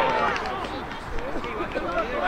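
Several players' voices shouting at once on an open football pitch just after a penalty kick, the overlapping shouts dying away about half a second in, followed by scattered calls.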